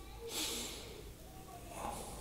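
A single short breath into the close microphone about half a second in, over faint room noise.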